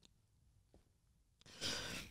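Near silence, then about a second and a half in, a man's single heavy, noisy breath, a sigh, as he fights back tears.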